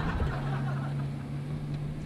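A steady low motor hum inside a limousine's cabin.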